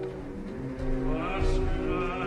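Opera orchestra playing sustained low chords, with a rising line entering above them about a second in.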